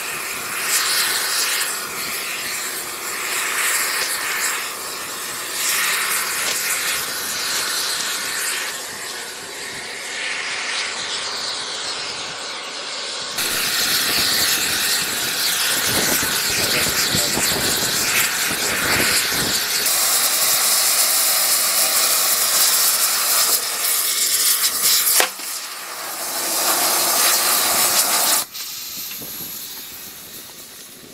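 A loud, steady hissing roar from thermite rail-welding gear, typical of a gas torch heating the rail joint. The sound changes abruptly several times: it grows louder about a third of the way in and shifts again near the end.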